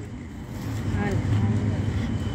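Low rumble of street traffic, swelling about half a second in, with a faint voice in the background.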